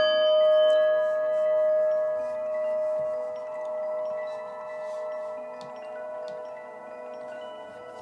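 A struck chime rings out once and decays slowly over several seconds, its loudness swelling and fading about once a second, while a few fainter, higher chime tones sound here and there.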